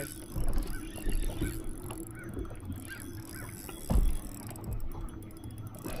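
Lake water lapping against the hull of a fishing boat, with irregular low bumps and one louder thump about four seconds in.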